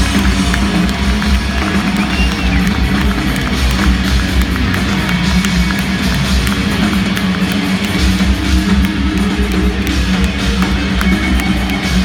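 Live rock band playing loud, driven by electric guitars over a drum kit, heard from far back in a large arena hall.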